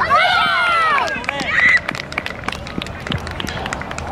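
Several high-pitched voices shouting excitedly over one another for about a second and a half as a shot goes in at the goal. Scattered sharp clicks and knocks follow.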